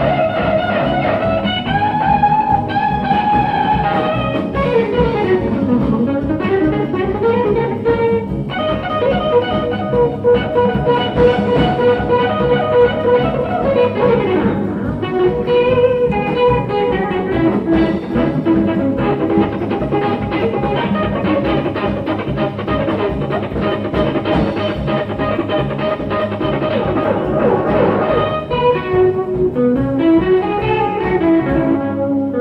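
Live jazz-rock instrumental: an electric guitar plays a lead line with bent and sliding notes over bass and drums. The sound is dull with no high treble, from an old, much-played cassette tape.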